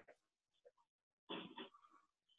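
Near silence, with one faint, brief sound about a second and a half in.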